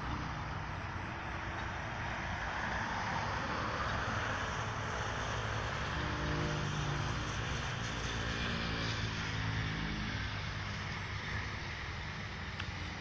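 A heavy vehicle approaching and passing close: a steady rumble with road noise, and an engine hum in the middle that drops slightly in pitch as it goes by.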